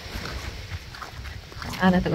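Quiet outdoor background with a few faint soft steps on sand as the person filming walks along the beach; a voice comes in near the end.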